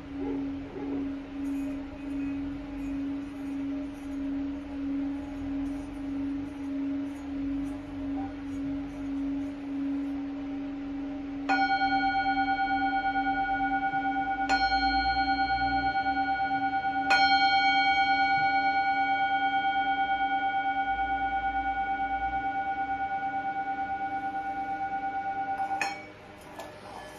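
Hand-held metal singing bowl rubbed around the rim with a wooden mallet, singing a steady low tone that wavers in a slow regular pulse. About halfway through it is struck three times, a few seconds apart, and each strike rings on with bright high overtones. The ringing stops abruptly at the end as the bowl is damped by hand.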